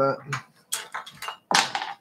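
A few short knocks and clicks of hard objects being handled as an airbrush is taken up for cleaning, the loudest about one and a half seconds in.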